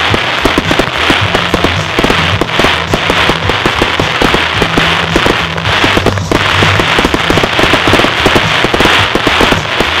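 Aerial fireworks bursting in a dense barrage: a fast, continuous run of sharp reports and crackle, several a second, with music playing underneath.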